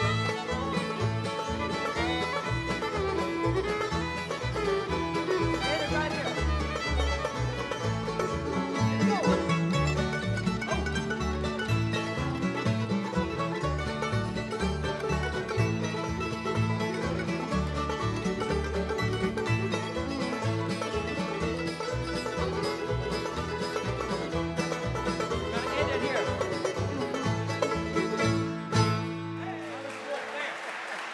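Live acoustic bluegrass band playing an uptempo instrumental section on fiddle, mandolin, five-string banjo, acoustic guitars and upright bass, with a steady bass beat under the picking. The music drops in level just before the end.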